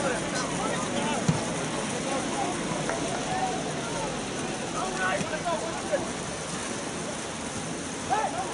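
Scattered distant shouts from players and onlookers at an open-air football match, over a steady background hiss, with one sharp thump about a second in.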